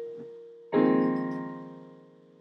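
Digital piano: a single note dies away, then a chord is struck about two-thirds of a second in and rings down. The chord is the second chord (vii) of a 6-7-1 progression in A-flat, G, E-flat, F and B-flat.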